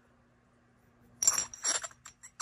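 Intel Pentium Pro ceramic CPUs with gold-plated caps clinking against one another as one is set down among them: two sharp, ringing clinks about half a second apart, a little over a second in.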